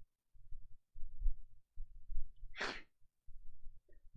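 A man's short, sharp breath, about two and a half seconds in, over a few faint low bumps.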